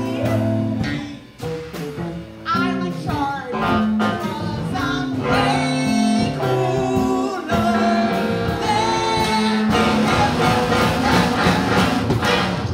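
Live band playing a song with a singing voice over electric guitar and a steady beat, with a brief drop in loudness about a second in.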